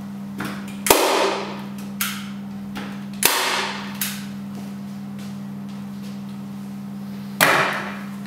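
A hand staple gun fired against a canvas on an easel: three loud snaps, about 1, 3 and 7 seconds in, each ringing briefly, with lighter clicks of the mechanism between them.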